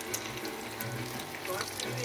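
Breaded eggplant slices frying in a skillet of hot oil: a steady sizzle with fine crackles and pops.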